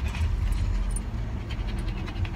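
Steady low rumble of an idling vehicle heard from inside the cabin, with a collie panting close by and a few faint clicks and rustles.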